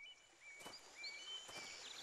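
Faint outdoor ambience: a small bird repeating short, high chirping notes, with two soft footsteps on a dirt path, about a third of the way in and again near the end.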